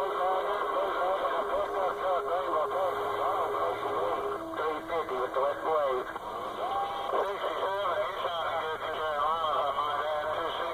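CB radio receiver on channel 28 AM, picking up distant skip stations talking over each other, garbled and warbling beyond understanding, with heterodyne whistles over a hiss of static. One steady whistle stops about four seconds in, and another comes in briefly near seven seconds.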